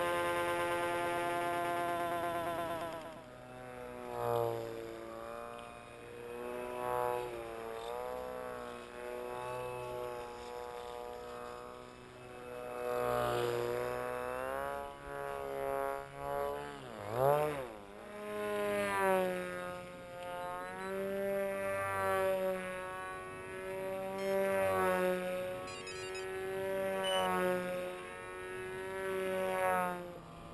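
Electric motor and propeller of an RC foam flying wing buzzing in flight, its pitch rising and falling as the throttle and distance change, with a quick swoop down and back up in pitch about halfway through as it passes.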